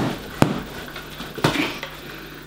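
Sharp knocks from an improvised flail, a wooden pole with a tennis ball on a string, being swung: two hard knocks about half a second apart at the start and a softer one about a second and a half in.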